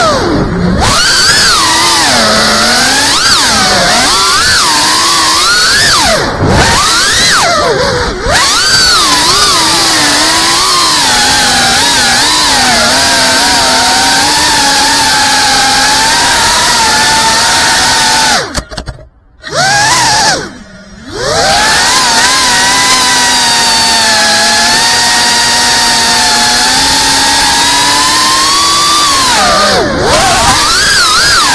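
FPV racing quadcopter's brushless motors whining, the pitch rising and falling with the throttle. About two-thirds of the way through the whine almost cuts out twice in quick succession as the throttle is chopped, then it picks up again and holds steadier.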